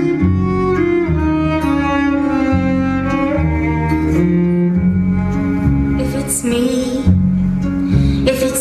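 Instrumental theatre band music: bowed strings such as cello and viola hold long notes over a bass line, with one line gliding down and back up about a second into the passage.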